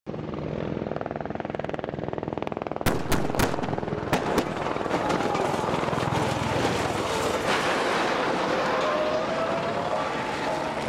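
Stunt vehicles speed past with a fast even pulsing, then a quick cluster of sharp bangs and crashes comes about three seconds in as one SUV flips and tumbles on the road shoulder. A dense rumbling roar follows, with a rising whine near the end.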